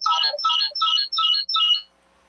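A short electronic tone pattern: five identical notes in a quick even run, about three a second, stopping just before the end.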